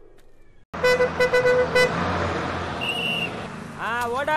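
Bus horn tooting four short times in quick succession, then the bus engine running with road noise.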